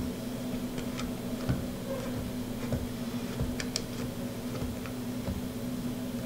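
Scattered small clicks and taps of hands handling an FPV patch antenna and tightening its mounting nut on the drone frame, over a steady low background hum.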